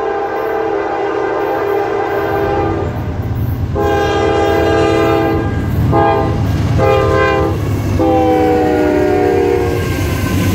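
Diesel freight locomotive's multi-tone air horn sounding as the train comes up and passes: two long blasts, two short ones, then a long blast whose pitch drops as the locomotive goes by. The low rumble of the locomotive engines rises beneath it.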